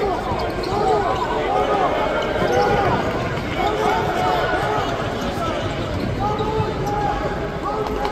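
Basketball shoes squeaking again and again on a hardwood court as players run and cut during live play, with a ball being dribbled and arena crowd chatter underneath.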